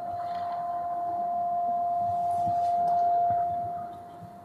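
A steady, high single-pitched ring from the hall's PA system, microphone feedback from the handheld mic. It grows louder and then fades away near the end.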